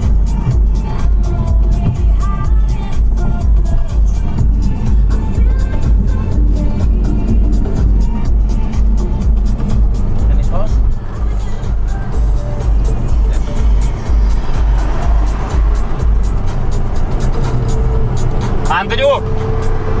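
Electronic dance music with a steady beat, and a voice coming in near the end.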